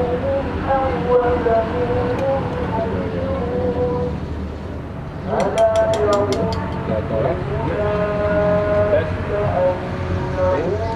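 A voice chanting in long, held, wavering notes with no beat, over a steady low background hum. A quick run of light clicks comes about five and a half seconds in.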